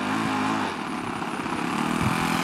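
Radio-control Cub model airplane engine running at low throttle as the plane taxis, a steady buzz that wavers slightly in pitch.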